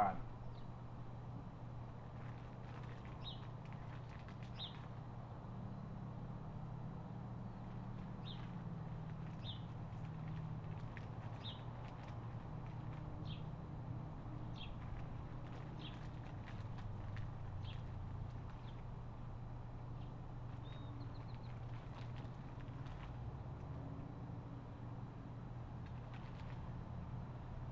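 Faint outdoor background with a low steady hum, and a bird giving short high chirps every second or two through most of it.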